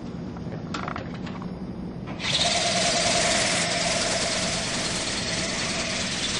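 A few faint clicks, then about two seconds in the Wowee Dragonfly RC ornithopter's small electric motor and flapping wings start up suddenly and run on as a steady whirring buzz while it flies.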